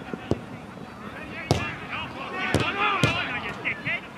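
A football being kicked during play: a few sharp thuds of boot on ball, the loudest about halfway through and two more close together near the end, with players shouting across the pitch.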